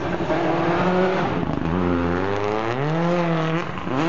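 Red Bull Citroen rally car's engine revving as it approaches on a gravel forest stage, the revs rising and falling, climbing through the second half and dropping sharply near the end.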